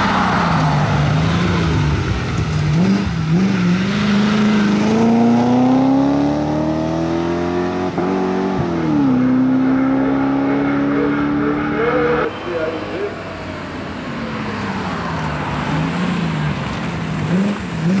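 Mercedes 500 SLC Group 2 race car's V8 under hard acceleration uphill. The revs climb steadily, drop sharply at a gear change about halfway through, then climb again before the sound cuts to a quieter, wavering engine note.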